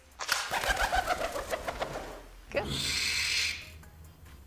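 A pigeon taking off and flying, its wings clapping and flapping rapidly for about two seconds, followed by about a second of loud whooshing wing noise as it flies past. This is the noisy flight of a pigeon, in contrast to an owl's near-silent flight.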